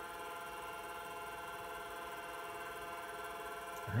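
Apple Lisa 2/10 computer running while it loads: a steady hum of several held tones.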